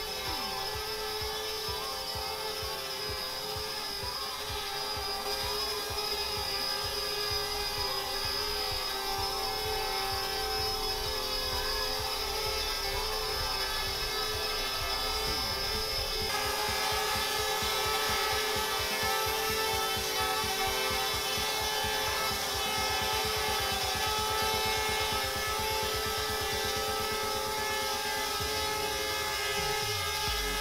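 Parrot Bebop 2 quadcopter's motors and propellers whining steadily as it hovers close up, a hum of several held tones that shift slightly about halfway through.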